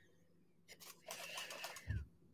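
A person sniffing through the nose: a short sniff, then a longer one of about a second, ending with a soft low thump.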